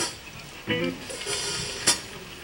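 Soft jazz drumming on snare and cymbals, with hissy washes and a sharp stick hit near the end that is the loudest moment. A short pitched sound comes less than a second in.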